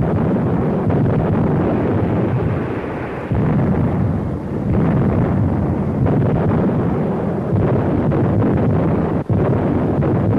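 Artillery barrage on an old film soundtrack: a continuous, dense rumble of shellbursts and gunfire, dull with little treble. It shifts suddenly in level a few times and drops out briefly near the end.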